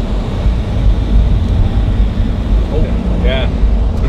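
Subaru BRZ's flat-four engine and road noise heard from inside the cabin as the manual car pulls away and gets under way, a loud, steady low rumble. A brief voice cuts in near the end.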